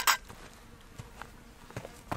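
Faint buzzing of flying insects hanging in the air, preceded by one short, loud rush of noise right at the start, with a few faint light clicks later on.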